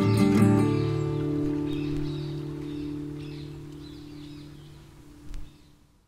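Acoustic guitar playing the last few strums of the song, then a final chord left to ring and slowly die away. A soft knock comes near the end as the ringing fades out.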